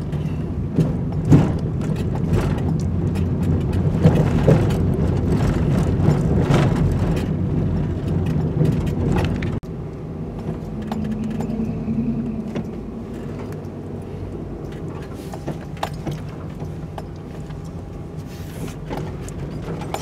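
Cabin noise of a Nissan NV200 van driving slowly: a steady low engine and road rumble with light rattles and clicks. It gets quieter about halfway through.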